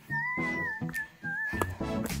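Background music: a light tune with a wavering, whistle-like lead melody over a rhythmic accompaniment.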